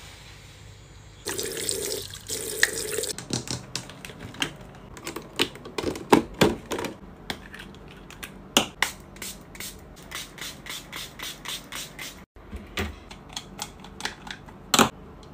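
Skincare ASMR sounds: a watery, foamy noise for a couple of seconds, then a long run of sharp clicks and taps, several a second, from long fingernails and a spray pump on plastic skincare bottles.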